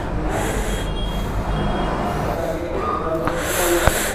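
Cloth drawstring bag rustling and crinkling as a charger and its cable are pulled out by hand, with a close, rumbling handling noise on the microphone. There are two louder hissy rustles, about half a second in and near the end. Faint voices are in the background.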